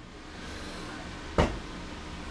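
A single dull knock about one and a half seconds in, as a steel high-lift jack is set against the spare tire carrier, over faint steady background noise.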